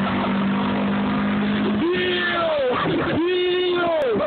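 Steady engine and road drone heard from inside a moving car, then from about two seconds in, excited whooping voices with drawn-out rising and falling calls.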